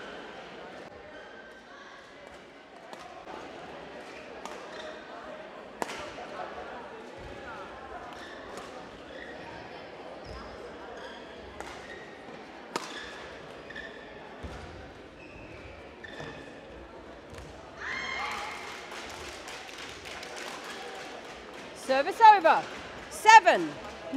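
Badminton rally in a large hall: scattered sharp smacks of rackets hitting the shuttlecock over faint crowd noise, and near the end several loud, high squeals that glide up and down in pitch.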